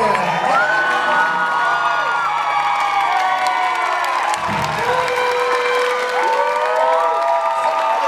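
Live swing band with saxophones, piano and upright bass playing long held notes, with a crowd cheering and whooping over the music.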